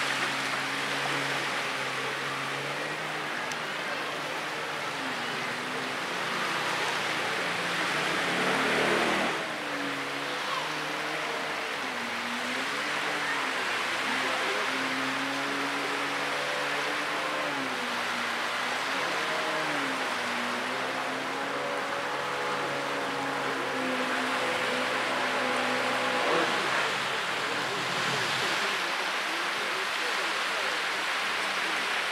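Yamaha SuperJet stand-up jet ski engine revving, its pitch rising and falling again and again as the throttle is worked through turns, over a steady hiss of spray and surf. The engine note dies away a few seconds before the end as the craft slows.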